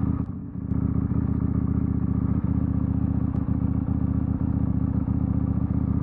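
KTM 890 Duke R's parallel-twin engine idling steadily through its full titanium Akrapovič exhaust, with a brief dip in level about half a second in.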